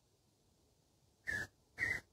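Two short, raspy, whistle-like animal calls about half a second apart, starting about a second and a quarter in.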